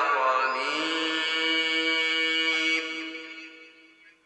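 A man reciting the Quran in the melodic tajweed style: a wavering, ornamented vocal line settles into one long held note, which ends about three seconds in and fades out in reverberation.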